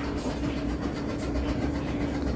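A steady mechanical hum holding one constant tone, over a low rumble.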